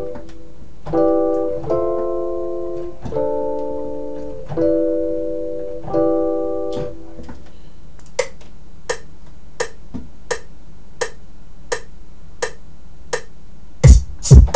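Smooth chords on a keyboard instrument in FL Studio, played from a MIDI keyboard in a repeating progression. After about seven seconds the chords stop and only a run of evenly spaced ticks is left, about three every two seconds.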